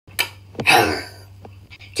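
A person's single short, sharp, breathy vocal burst, which sounds like a sneeze, coming just over half a second in after a small click and fading within about half a second.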